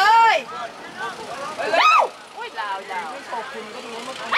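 Voices shouting on the sidelines of a rugby match: a loud rising-and-falling call at the start and another about two seconds in, with fainter shouts in between.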